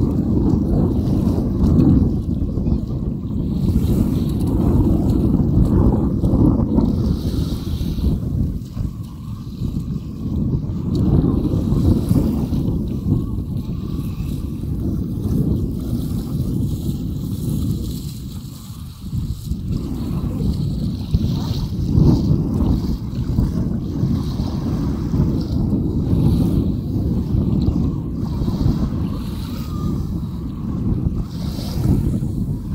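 Wind buffeting the microphone: a loud, low rumble that rises and falls in gusts, easing briefly a little past halfway.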